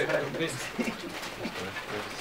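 A man's voice calls a name once at the start, followed by faint outdoor background with a few weak, indistinct sounds.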